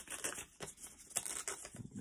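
A sheet of paper being torn by hand along a fingernail-creased fold into a thin strip, with quiet, uneven crackling and rustling.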